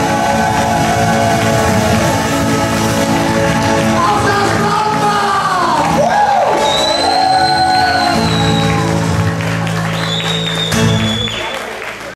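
Live band playing the close of an Austro-pop song: drum kit, electric bass and acoustic guitars, with some singing. The sound falls away near the end.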